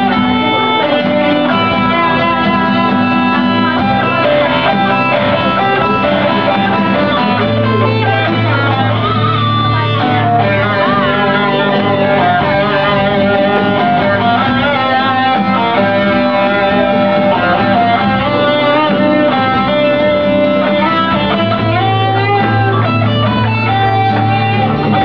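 Electric and acoustic guitars playing an instrumental passage of a rock ballad, with long held notes and a few bent notes.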